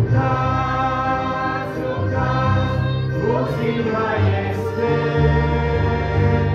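Choir singing a religious song over instrumental accompaniment, with long held chords and a steady bass line.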